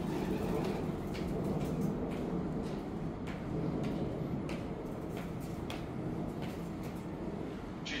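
Class 345 Elizabeth line electric train approaching from a distance: a steady low rumble with scattered light clicks.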